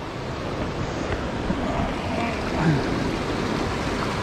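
Ocean surf washing in and out among the boulders of a rock jetty: a steady rushing wash of water.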